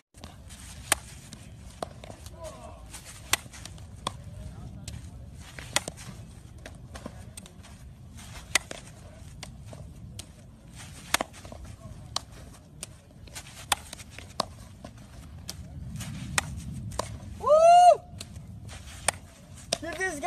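Baseball infield practice: scattered sharp clicks and knocks of baseballs being hit, hitting the dirt and popping into leather gloves, over low outdoor background noise. A short shout rises and falls a little before the end.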